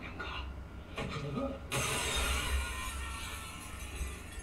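Drama soundtrack playing quietly under tense music, then about two seconds in a sudden crash of a glass panel shattering that trails on for about two seconds.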